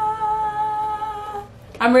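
A single high note held steadily, like a hummed or sung "ahh", that stops about a second and a half in; a woman starts speaking just after.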